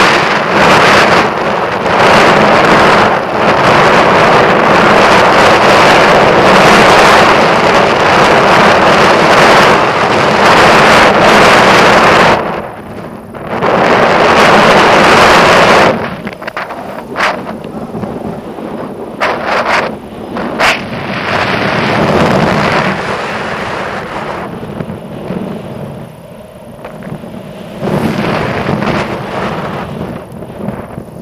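Strong wind rushing and buffeting over a handheld action camera's microphone as a tandem paraglider flies. It is loud and gusty, drops briefly a little before halfway, and after about sixteen seconds turns weaker and more uneven, with a few sharp pops.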